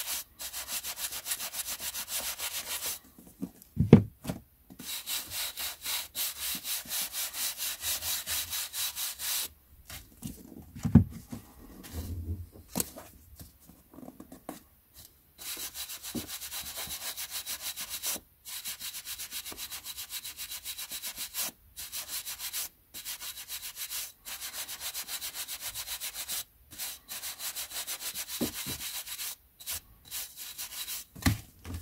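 A wooden-backed bristle brush swept briskly back and forth over the page edges of a stack of old paperbacks to dust them, in runs of quick, even, hissing strokes with short pauses between. A couple of dull thumps come as the books are handled, the loudest about four seconds in.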